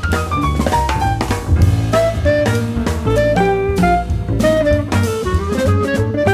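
Small jazz ensemble playing a brisk, angular tune: piano lines over walking double bass and drum kit, with a descending piano run in the first second.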